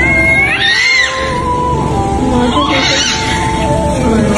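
A newborn baby's high, thin cry, rising and falling, first near the start and again about three seconds in, as the baby is being revived after birth. Sustained background music runs underneath.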